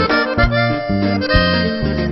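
Norteño music: an accordion plays an instrumental melody over a bass line that steps between notes, with no singing.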